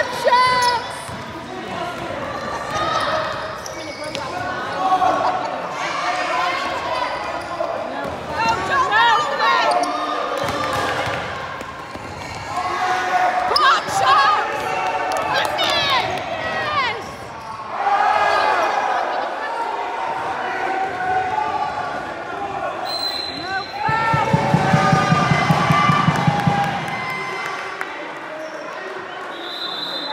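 Basketball game sounds in a large sports hall: the ball bouncing on the court, sneakers squeaking and players shouting. About three-quarters of the way through, a loud low rapid rattle lasts about three seconds. Near the end comes a short high whistle blast as play stops.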